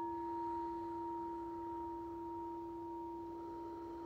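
A singing bowl ringing on with a steady low tone and two higher overtones, slowly fading.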